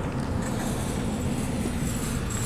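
A steady low mechanical hum over a wash of background noise.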